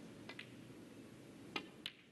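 Snooker cue tip striking the cue ball, a sharp click, followed about a third of a second later by a second click as balls make contact. Two faint ticks come first, over the low hum of a quiet arena.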